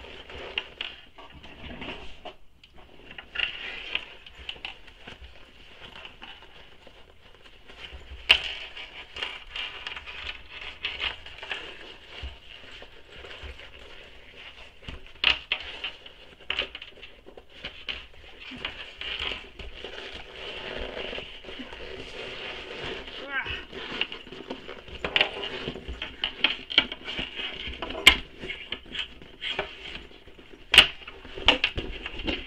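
Vinyl and fabric rustling and crinkling as a sewn vinyl backpack is pushed and pulled right side out through its lining, with frequent sharp clicks and taps of the bag's metal hardware knocking about.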